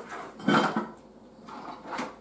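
Metal utensils clinking and scraping against a pie dish and a ceramic plate as a slice of pie is served, with one louder clink about half a second in and a softer one near the end.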